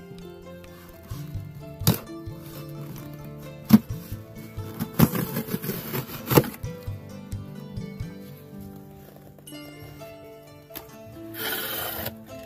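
Background music, with a folding knife slitting packing tape on a cardboard box over it. There are sharp clicks about two and four seconds in, then a longer scraping rip about halfway through. Cardboard flaps rustle open near the end.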